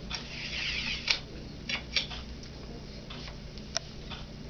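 A thin push rod sliding out of a plastic handle: a brief scrape in the first second, then a few light clicks and taps as the parts are handled.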